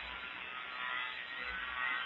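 Steady background hiss with a low mains hum from an old sermon recording, heard during a pause in the preaching.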